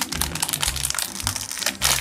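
Plastic packaging crinkling as a bag of rubber laundry balls is handled and pulled open, over background music with a recurring bass beat.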